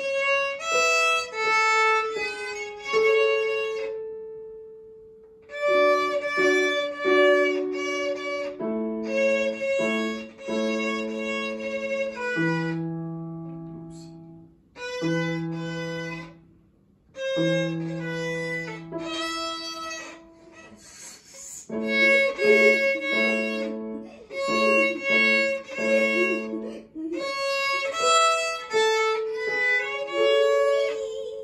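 Violin and electronic keyboard playing a tune together, the violin holding long bowed notes over lower keyboard notes, with short pauses between phrases.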